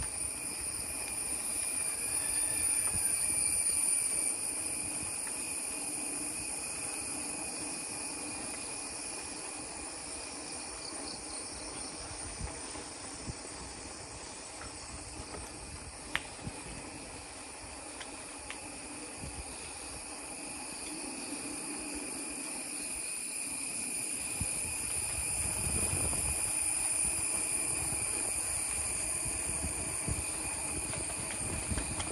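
Bicycle tyres rolling over an interlocking paver-block path, a low rumble that swells and fades, under steady high-pitched insect calls in several layers. A couple of sharp clicks come about halfway through.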